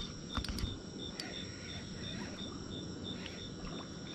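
A cricket chirping in an even pulse, about three chirps a second, with a few sharp clicks in the first second or so.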